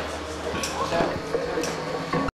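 Indistinct voices talking, with a few sharp clicks and knocks, about two.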